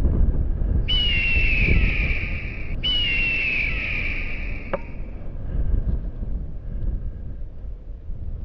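Wind buffeting the microphone during the paraglider flight, with two long descending bird screeches, one right after the other, in the first half.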